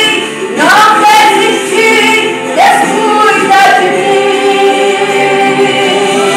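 A woman singing a Portuguese gospel praise song into a microphone, amplified in the hall, scooping up into long held notes.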